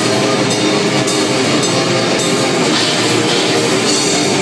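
Black metal played live and loud: distorted electric guitars and bass over fast, even drumming with cymbals.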